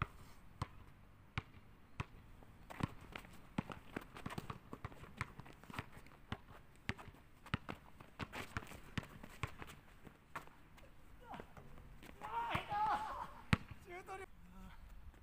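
A basketball is dribbled on a hard outdoor court, a steady run of bounces about one every 0.7 s. Near the end a person's voice comes in briefly, followed by one sharp, louder impact.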